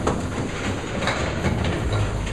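Candlepin bowling alley: small hard balls rolling down the wooden lanes with a steady low rumble, broken by several sharp knocks.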